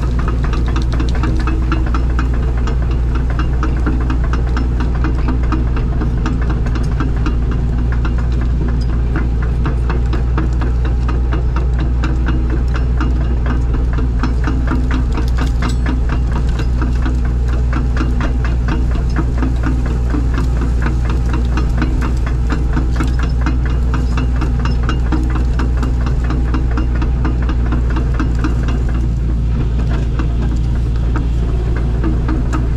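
Skid steer loader's diesel engine running steadily, heard from inside the cab, with a constant fast clatter over a deep drone.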